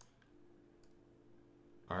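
Faint computer clicking as a web link is clicked, over quiet room tone with a faint steady low hum.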